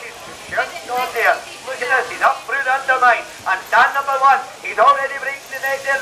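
Only speech: a man's fast, continuous commentary.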